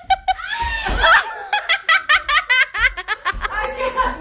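People laughing hard, in quick repeated ha-ha pulses, as a woman tumbles out of a failed cartwheel onto a wooden floor.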